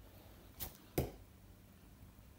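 A short tasselled bo-shuriken thrown by hand at a target board: a faint brief sound about half a second in, then a louder short thud about a second in as the blade strikes the target.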